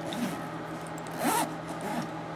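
Zipper on a black fabric shoulder bag being pulled, one short zip a little past halfway.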